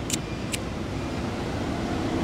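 Two short clicks of a handheld cigarette lighter being struck, about half a second apart, over a steady low rumble of road traffic.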